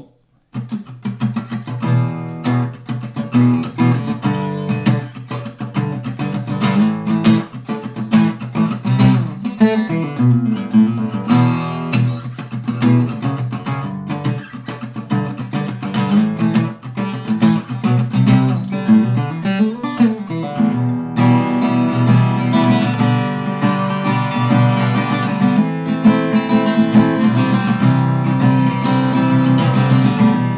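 Jean-Marc Burlaud parlor acoustic guitar with a cedar top and walnut back and sides, played solo after a brief pause: picked notes and chords, turning to fuller, denser playing about two-thirds of the way through.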